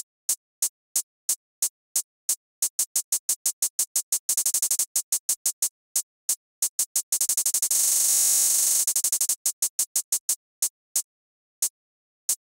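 An electronic drum-machine hi-hat from Logic Pro's Silverlake kit, retriggered by Note Repeat while one key is held. It starts with steady hits about three a second, then speeds up. Twice the hits run so fast they blur into a buzzing roll. Near the end it slows to about one and a half hits a second as the repeat rate is changed.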